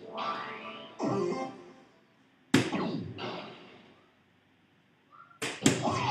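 Soft-tip darts hitting a DARTSLIVE electronic dartboard: a sharp click as each dart lands, followed by the machine's electronic hit sound effect. One hit comes about two and a half seconds in, and two come close together near the end.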